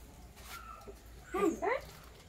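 Two short rising squeals from a girl's voice, about one and a half seconds in.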